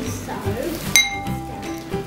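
A metal spoon clinks once against a glass mixing bowl about a second in, the glass ringing briefly, while a thick gloopy mixture is stirred.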